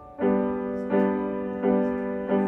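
Grand piano: after a soft held note, a loud chord is struck about a fifth of a second in, then chords are struck again about every 0.7 seconds, each ringing on until the next.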